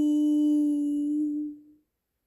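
A voice holding one long, steady note, the drawn-out end of a sign-off "bye". It fades and stops just before the end.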